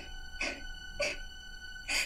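A little girl crying in three short gasping sobs.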